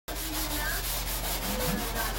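Scouring pad scrubbing an electric stovetop, a steady rasping rub in repeated strokes over a low hum.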